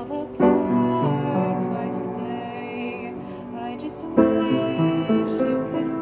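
Upright piano playing slow, soft chords, with two strong chords struck about half a second in and about four seconds in, each ringing on and fading.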